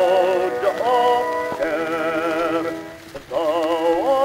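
Acoustically recorded 78 rpm Victor disc playing a baritone singing a hymn with orchestra. The singer holds notes with a wavering vibrato, and there is a short break between phrases about three seconds in.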